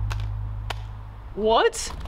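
A low bass note of background music dying away, with two faint clicks, then about a second and a half in a short vocal exclamation rising in pitch, ending in a breathy hiss.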